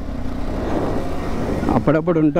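A KTM Adventure 390's single-cylinder engine running steadily as the bike is ridden, mixed with rushing wind noise at the rider's position. A man's voice starts talking near the end.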